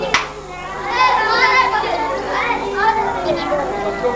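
Several children's voices talking and calling out over one another, with a single sharp click just after the start.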